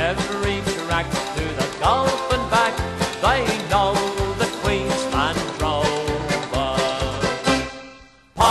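Australian bush band playing a country-style folk song with a steady bouncing bass beat and sliding melody notes, fading out near the end.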